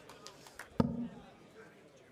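A steel-tip dart striking a bristle dartboard about a second in: one sharp knock with a short, low ring.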